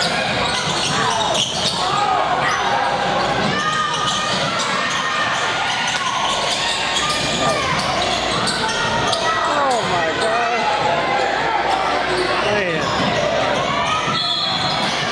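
Basketball being dribbled and bouncing on a hardwood gym floor during live play, with sneakers squeaking and players calling out, echoing in a large gymnasium.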